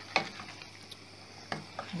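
Wooden spoon stirring chunks of chicken and chili sauce in a stainless steel pot, with a few sharp knocks of the spoon against the pot, the loudest just after the start.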